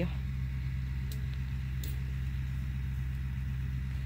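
A steady low hum like a distant engine or motor running, unchanging throughout, with two faint, very brief high chirps about one and two seconds in.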